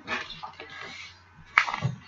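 Scratchy rubbing of a pencil and a clear acrylic ruler against cardstock for about a second, then a single sharp click as the ruler is set down again.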